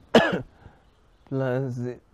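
A single sharp cough, followed about a second later by a man's short spoken word.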